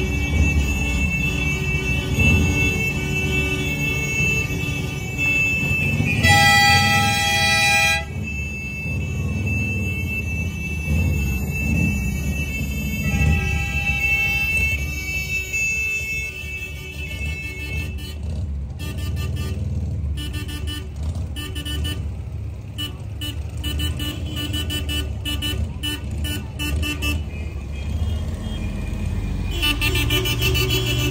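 Old cars driving slowly past with their engines running. One car's horn sounds for about two seconds, around six seconds in, and a shorter honk follows about a second after the twelve-second mark.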